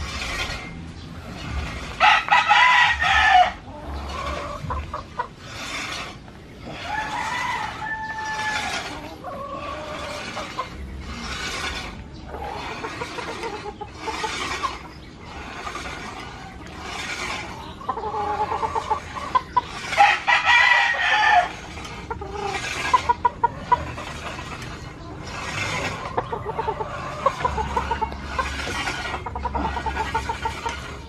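A rooster crowing twice, loudly, about two seconds in and again about twenty seconds in, with chicken clucking in between.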